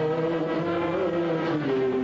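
Big band dance orchestra playing long held notes, the melody moving to a lower note about one and a half seconds in.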